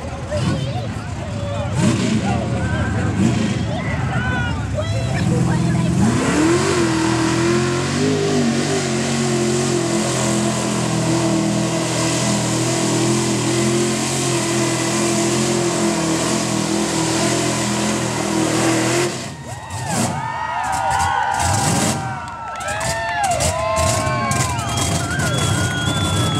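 Lifted mud truck's engine revving up about six seconds in and held at high revs for around thirteen seconds as the truck churns through a mud pit, then dropping away suddenly. Voices are heard before the engine climbs and again after it drops.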